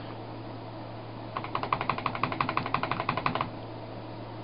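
Computer keyboard keys clicking in a fast, even run, about ten a second, starting about a second and a half in and lasting about two seconds, over a low steady hum.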